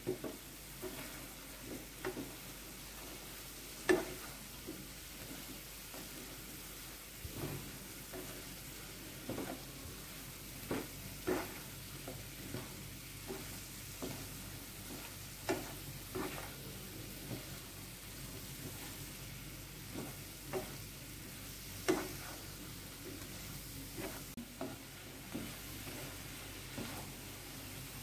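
Mushroom pieces being stirred through a thick masala in a non-stick frying pan with a spatula: a faint steady sizzle, broken now and then by irregular scrapes and taps of the spatula against the pan.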